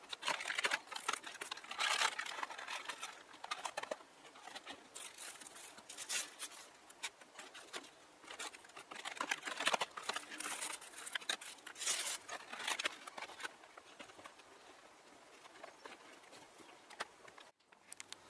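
Clear plastic packaging tray crinkling and rustling in irregular bursts as a model train is lifted out of it by hand. It goes quieter for the last few seconds.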